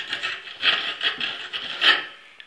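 Sandpaper rubbed by hand in short scratchy strokes on the steel waveguide housing of a microwave oven, scouring off burnt-on carbon and soot. The last stroke near the end is the loudest.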